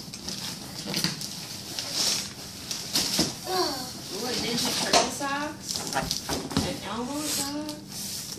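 Wrapping paper being ripped and crumpled off a gift box in short crackling bursts, among young children's voices.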